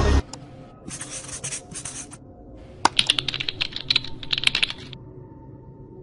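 Rapid computer-keyboard typing clicks in two quick runs, the second one longer, sharper and louder, just after loud electronic music cuts off.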